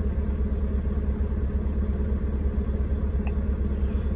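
Semi truck's diesel engine idling, heard inside the cab as a steady low rumble, with one faint click about three seconds in.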